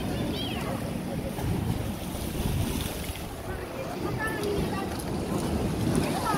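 Wind buffeting the microphone over the wash of sea waves breaking on rocks, a steady rough rumble, with faint chatter of people.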